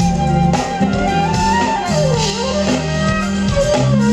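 Live smooth jazz band playing, with drum kit, bass and a held lead melody line that glides down and back up about two seconds in.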